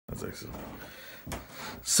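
Rubbing and scraping handling noise from a handheld phone close to its microphone, with a brief louder scrape about a second in. A breathy hiss and the first word of speech come at the very end.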